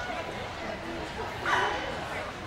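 A dog barking, with one louder bark about one and a half seconds in, over background voices.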